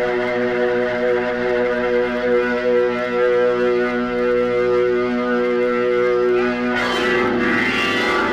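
Progressive rock record: one long held organ chord, steady for most of the stretch. Near the end it gives way to a noisier, wavering passage.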